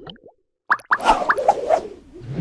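Animated logo sting: after a short pause, a quick run of short rising pop-like blips over a brief swish, about a second in.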